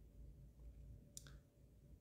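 Near silence: room tone, with one faint, short click a little over a second in.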